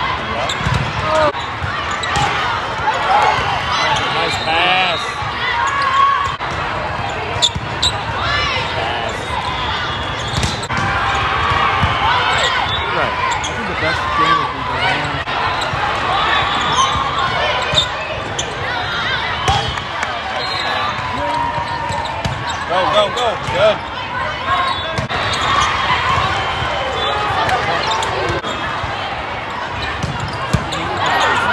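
Busy indoor volleyball hall: many overlapping voices of players and spectators calling and chattering, with sharp slaps of a volleyball being hit and bouncing off the court several times.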